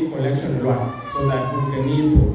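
A man speaking continuously to a congregation, with a thin, high, drawn-out sound falling slightly in pitch through the second half.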